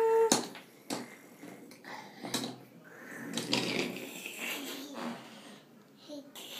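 Two sharp knocks about half a second apart, then softer irregular knocking and scraping: a toddler handling small toy trains on a wooden train table.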